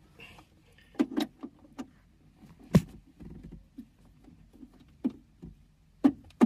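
Scattered small clicks and knocks of plugs and a cable being handled at a Jackery portable power station, the sharpest knock a little under halfway through.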